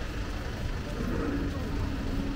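Busy riverside walk ambience: a steady low rumble with passers-by talking faintly in the second half.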